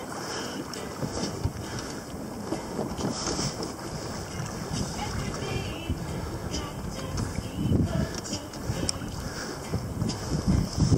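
Wind buffeting the camera microphone over water splashing and slapping against the hull of a Hobie Pro Angler fishing kayak, with heavier slaps about eight seconds in.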